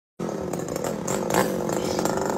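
Chainsaw engine running at a low, steady idle, starting just after the opening moment, with a brief small rise in revs about one and a half seconds in.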